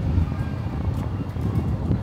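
Wind buffeting the microphone as a low, uneven rumble, with background music underneath.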